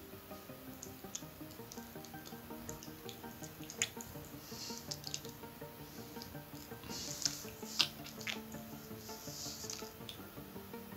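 Light plastic clicks and rustles as a laptop motherboard is handled and lifted out of its plastic bottom case. The sharpest click comes about eight seconds in. Faint background music plays under it throughout.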